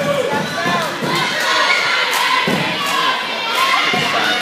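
Spectators in a gymnasium shouting and cheering, several voices at once, growing louder about a second in, with a few thuds.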